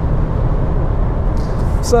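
Steady low road and engine rumble inside the cabin of a Volkswagen T-Roc Style driving at speed.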